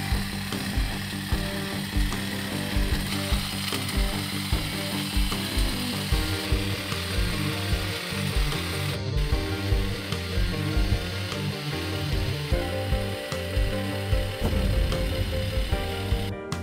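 Worx WG264E 20V cordless hedge trimmer running, its blades cutting through a leafy hedge, over background music with a steady beat.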